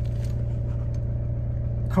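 Steady low drone of a car running, heard from inside the cabin.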